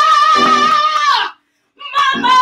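A woman singing a high, sustained note with wide vibrato, with piano accompaniment; the note slides down and breaks off a little over a second in, and after a brief silence she comes back in with another held note near the end.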